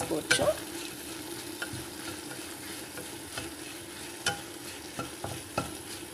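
Dried red chillies frying in oil in a nonstick kadai, being stirred with a wooden spatula: a steady sizzle with a low hum underneath, and the spatula knocking against the pan roughly once a second.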